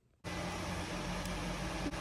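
Steady background hiss with a low hum, like air-handling noise, cutting in abruptly after a brief silence; a faint click near the end.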